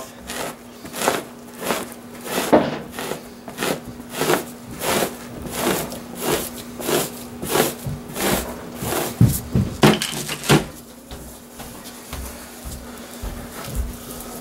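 Two-handled fleshing knife scraping the membrane off the flesh side of a salted deer hide laid over a wooden beam, in even strokes about two a second that stop about ten seconds in.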